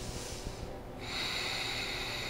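A woman breathing deeply through the nose as a guided yoga breath. A steadier, louder stretch of breath starts about a second in.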